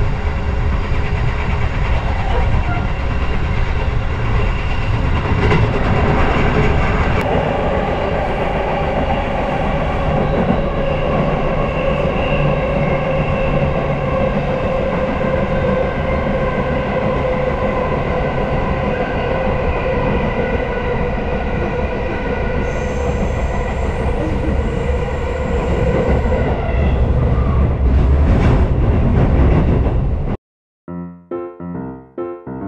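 Ride noise inside a moving electric train: a steady rumble of wheels on rails, with a whine that slowly falls in pitch. The rumble grows a little louder near the end as the train runs into the station tracks.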